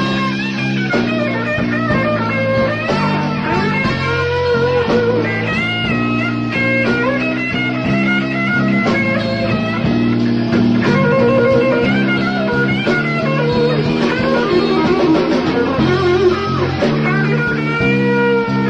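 Live blues band in an instrumental passage: electric lead guitar soloing with bent, wavering notes over a steady bass line and rhythm guitar.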